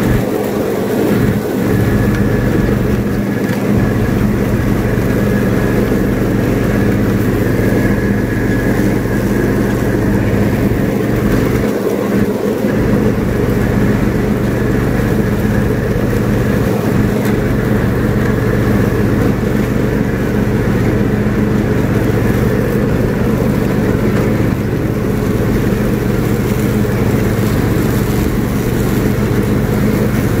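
John Deere riding lawn mower's engine running steadily under load while mowing grass, heard from the driver's seat. The engine is running well on its test mow after being brought back from not running.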